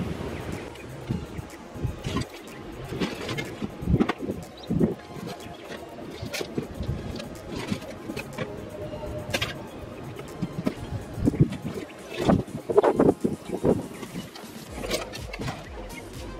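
Soft background music under irregular knocks, clatter and rustling of a cardboard box and the loose items in it being handled and lifted. The busiest handling comes about three-quarters of the way in.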